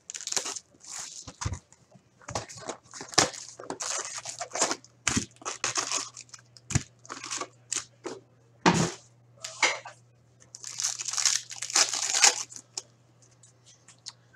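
Plastic shrink wrap being torn and crumpled off a hockey card box, and the foil card packs inside crinkling as they are taken out and stacked: irregular crackling and tearing with short pauses.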